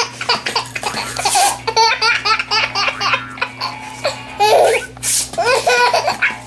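A baby laughing in many short bursts of giggles and belly laughs, set off by paper being ripped. Hissy tearing noises come about a second and a half in and again about five seconds in.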